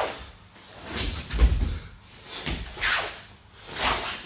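A man's body and clothing moving on a training mat during repeated sit-out drills: short swishes about once a second, and a couple of dull thumps as he shifts his weight and lands on the mat.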